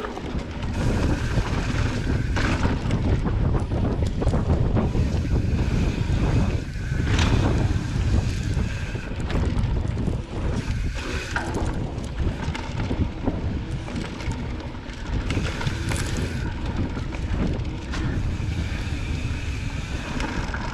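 Mountain bike rolling along a dirt singletrack: steady wind buffeting the microphone over a low rumble of tyres and frame, with scattered knocks and rattles as the bike goes over bumps.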